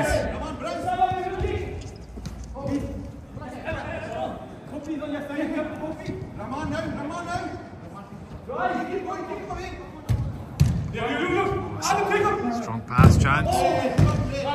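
Players shouting to each other during an indoor five-a-side football game, with thuds of the ball being kicked; the loudest kick comes about thirteen seconds in.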